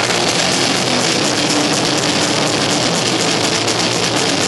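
Blackened death metal band playing live at full volume: heavily distorted electric guitars and drums merge into a dense, unbroken wall of sound.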